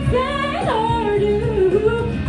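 A woman singing into a microphone over backing music; about halfway through her voice slides up and back down into a long held note.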